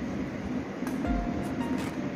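A steady low rumbling hum with faint background music, a few short notes and soft low thumps coming in during the second second.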